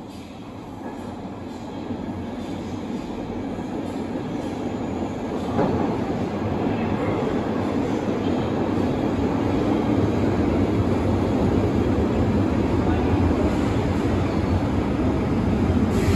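Stockholm metro train approaching through the tunnel into the station, its rumble growing steadily louder as it nears. A single sharp clack comes about five and a half seconds in.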